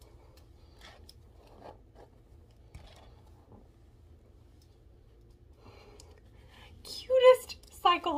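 Faint, scattered rustling and scratching of hands working hair and a fabric cap at the back of the head. Near the end, a woman gives a short, loud vocal sound.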